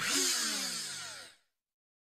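Logo animation sound effect: a loud noisy rush with a falling pitch sweep beneath it, fading out about a second and a half in.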